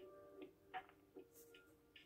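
Near silence: a few soft ticks of a ballpoint pen writing on notebook paper, under faint background music with held notes.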